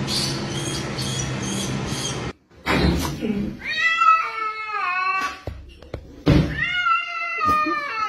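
A cat giving two long, drawn-out meows that waver in pitch, the first about four seconds in and the second near the end. Before them, a steady noisy rattle with short scratchy bursts cuts off suddenly about two seconds in.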